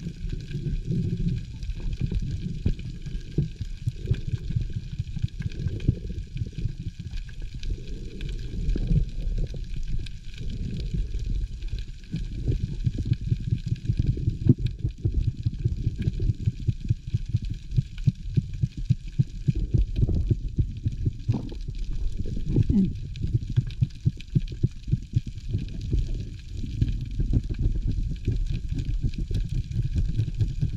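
Underwater ambience picked up by a camera in a waterproof housing: a muffled, low rumble of moving water with a dense, irregular crackle of clicks throughout.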